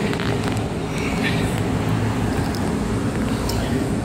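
Steady rushing hum of rooftop air-conditioning units running, with a few faint knocks from climbing an aluminium ladder.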